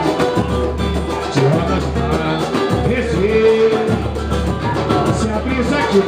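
Live samba: a man singing into a microphone over the band's accompaniment, holding one long note about halfway through.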